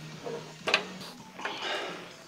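A lifter's short, forced breath or grunt of effort about two-thirds of a second in, followed by a longer breathy exhale, during a set of heavy bent-over rows, over a steady low hum.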